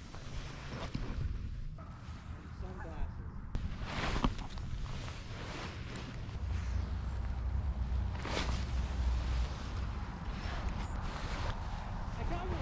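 Outdoor ambience on the microphone: a steady low rumble, heaviest in the middle of the stretch, broken by three sharp knocks about four seconds apart.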